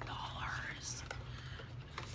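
A woman whispering softly, with one hissy sibilant about a second in, over a steady low hum.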